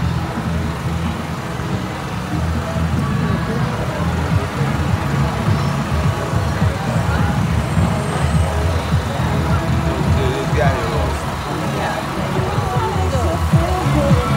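Farm tractor engine running steadily as it passes close by, a loud low rumble, with voices and music from the parade over it, more of them near the end.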